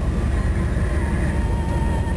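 A car driving slowly, heard from inside the cabin: a steady low engine and road rumble.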